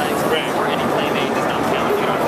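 Continuous babble of a busy, crowded convention hall with many people talking, and a man's voice speaking close by.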